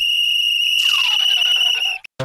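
Plastic lifeguard whistle blown in one long, steady, high-pitched blast that cuts off suddenly at the end. It is a warning to children running by the pool. A second, lower sound gliding downward in pitch joins about halfway through.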